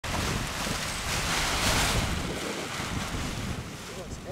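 Strong wind blowing over the microphone: a steady rush of air with low buffeting, swelling a little around the middle.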